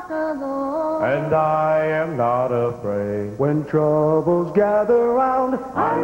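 Southern gospel group singing in harmony into microphones, male and female voices with long held notes.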